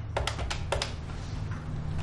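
Desk telephone keypad buttons pressed in quick succession: about six sharp plastic clicks in the first second, then a low steady hum.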